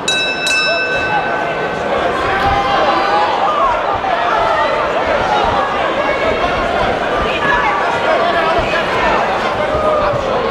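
Boxing ring bell struck twice in quick succession to start round one, ringing on for a second or two. Then a crowd of spectators shouts and cheers loudly and continuously as the fight begins.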